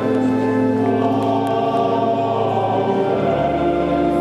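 Choir singing slow, held chords in a church, the notes changing only a few times in four seconds.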